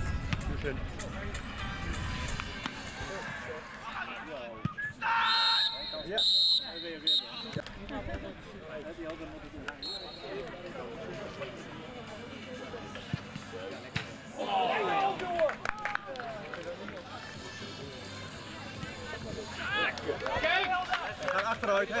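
Outdoor football match sound with spectators' voices and shouts. A referee's whistle gives two short, high blasts about five and six seconds in, and a faint third blast follows a few seconds later.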